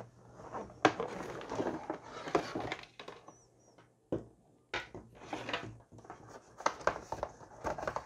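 Hands handling a cardboard headset box and its packaging: irregular rustling and scraping with a few sharp knocks, and a brief silent gap around the middle.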